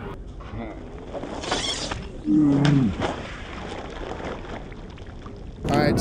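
A man's loud, drawn-out yell, falling slightly in pitch, about two seconds in, as a fishing reel is thrown into the pond. A brief rush of noise comes just before it.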